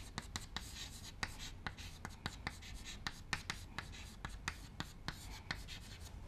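Chalk writing on a chalkboard: an irregular run of short taps and scratches, several a second, as a word is written out letter by letter.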